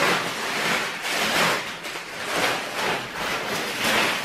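A shopping bag rustling and crinkling continuously as groceries are rummaged through and pulled out of it, in uneven swells.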